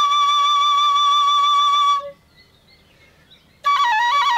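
Flute music: the flute holds one long steady note for about two seconds and breaks off. After a short pause it comes back near the end with a quick, ornamented run of notes.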